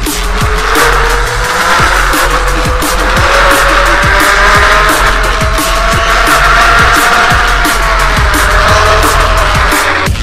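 Electric unicycle hub motor whining under drum and bass music; the whine climbs in pitch as the wheel speeds up and eases off a little near the end.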